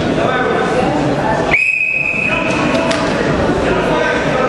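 A wrestling referee's whistle blown once, a single steady high-pitched blast lasting over a second, starting about a second and a half in, over the chatter of a crowd.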